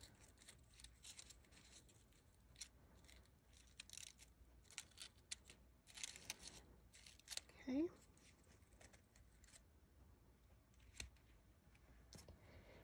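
Near silence with faint, scattered rustles and light ticks of cardstock paper petals being pressed and handled. A short rising sound comes about eight seconds in.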